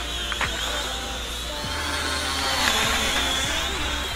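Eachine E58 mini quadcopter's propellers whining high, the pitch wavering as the pilot fights the wind, under background music.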